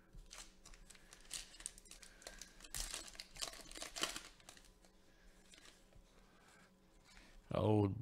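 Trading card pack wrapper being torn open and crinkled, a quick run of crackles and tearing in the first half. A man starts speaking at the very end.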